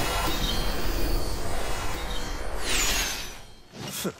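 Animated sound effects for a magic burst: a low rumble under a rush of noise, with a falling shimmering sweep near three seconds. It then dies away, and a short sharp hit comes at the very end.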